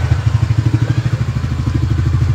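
Scooter engine idling with a steady, even low pulse, heard close to the bike.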